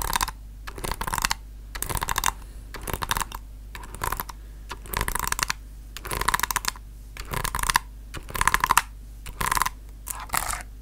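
Bursts of rapid clicking or tapping, like fingers on keys or a hard surface, about one half-second flurry each second.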